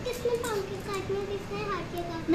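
A child's voice holding one long, wavering, unbroken vocal sound, like a drawn-out hum or whine rather than words.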